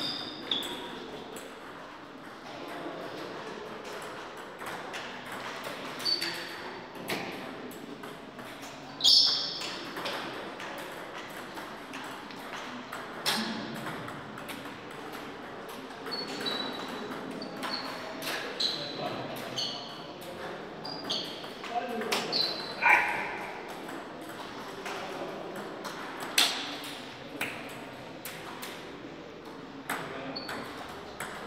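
Table tennis ball clicking sharply off rubber paddles and the table in short rallies, the clicks coming in scattered clusters with pauses between points.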